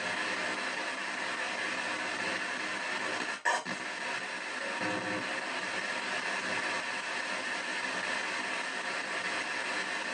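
P-SB7 spirit box sweeping through radio stations, giving out a steady hiss of radio static with a short break about three and a half seconds in.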